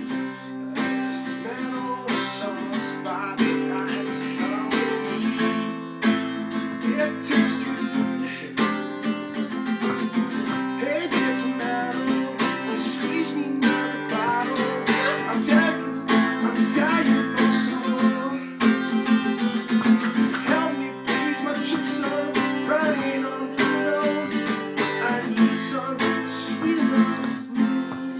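Acoustic guitar strummed in steady chords, with a regular strumming rhythm.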